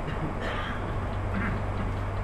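A short pause in a lecture: steady low room hum with faint background noise, and no clear event.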